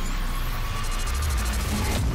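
Sound design for an animated logo intro: a deep rumble under a hiss of noise, with a faint steady tone, and a fast, even crackle of high ticks coming in about halfway through.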